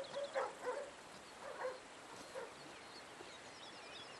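Faint birdsong: small birds chirping in short, high, repeated notes, more often in the second half, with a few faint, lower sounds in the first two seconds or so.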